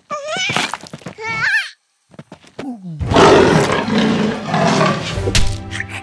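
A cartoon baby's high, wavering cries, then a loud gorilla roar starting about halfway through, the loudest sound, over background music.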